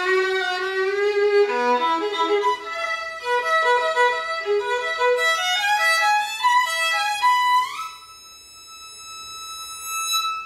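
Solo violin, an old German instrument labelled Aegidius Kloz, bowed: a held low note, then a run of notes climbing higher. About three-quarters of the way in it slides up to a long high note, held more quietly.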